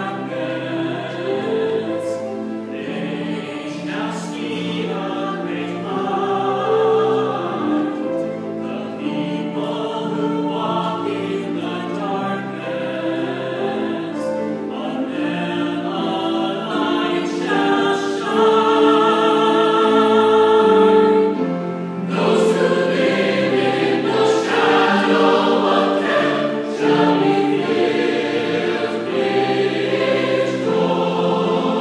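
Mixed-voice choir singing a sustained chordal passage. It swells to its loudest on a long held chord about two-thirds of the way in, breaks off for a moment, then comes back in strongly.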